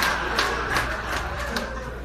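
Theatre audience laughing, with a few scattered claps, the laughter dying down over the two seconds.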